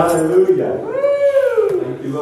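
A high, drawn-out vocal cry from a person in a worshipping congregation, its pitch rising and then falling over about a second, starting about half a second in.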